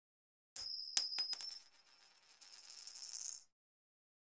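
A metal coin ringing as it drops onto a hard surface: a sharp strike about half a second in, a louder bounce at a second, then a few quick smaller bounces. After a short pause it rattles as it spins and wobbles down, and the rattle cuts off suddenly near the end.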